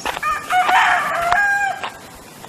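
A rooster crowing once, a single call of about a second and a half.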